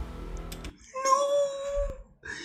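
A man's drawn-out, high-pitched "ooh" of shock, held on one steady note for about a second, following the tail end of fading background audio.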